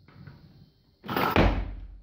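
Loaded Olympic barbell with bumper plates being cleaned from the floor. The bar and plates rattle faintly as it is pulled, then there is a loud clatter and heavy thud about a second in as the bar is caught on the shoulders in the squat.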